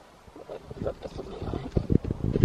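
Handling noise on a hand-held camera's microphone: low, irregular knocks and rubbing, growing louder toward the end after a nearly quiet start.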